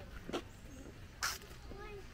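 Faint, distant voices, with a short click about a third of a second in and a brief hiss a little past a second in.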